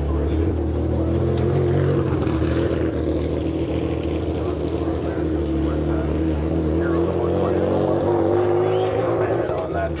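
An engine running steadily nearby, its pitch drifting slightly, with faint voices in the background.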